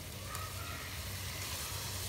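Potato and cauliflower pieces sizzling steadily in oil in a pot, being fried down on a medium flame.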